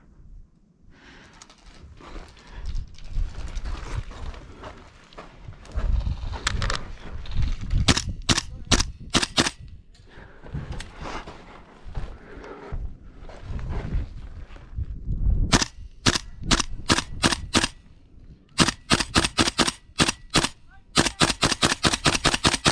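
An airsoft rifle firing in strings of sharp, snapping shots: about half a dozen about a third of the way in, another handful later, then a faster run of a dozen or more near the end. Low scuffing and bumping of movement in between.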